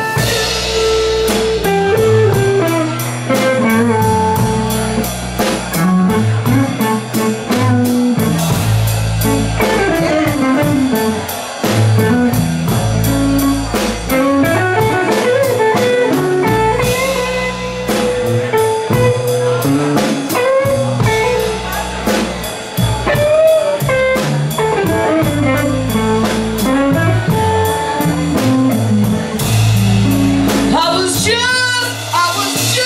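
Electric guitar solo on a semi-hollow-body guitar, with bent notes, over a slow blues accompaniment of bass and drum kit.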